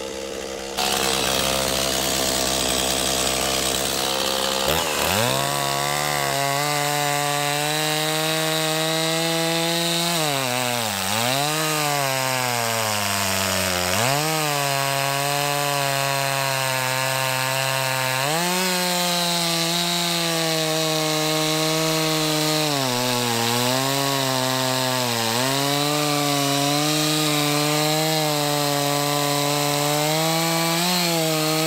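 Stihl MS 260 two-stroke chainsaw, fitted with a new drive sprocket, revving up to full throttle about five seconds in and then sawing through a log about 15 inches across. The engine pitch sags several times under the load of the cut and picks back up each time.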